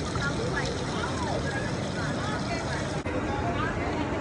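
Steady low rushing noise outdoors, with faint distant voices or chirps over it; the sound changes abruptly about three seconds in.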